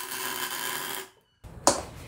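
A MIG tack weld on a steel tube: the wire-feed arc crackles and hisses for about a second and then cuts off. Near the end comes a single sharp click as the welding helmet is flipped up. The gun's nozzle is off and the shielding gas comes from a separate hose, and this tack comes out porous.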